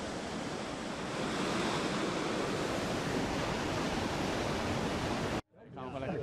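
Artificial surf-pool wave breaking: a steady rush of churning whitewater that cuts off abruptly about five and a half seconds in, followed by voices.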